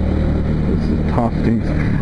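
Motorcycle engine running at a steady cruise, a low even hum, heard from the rider's seat.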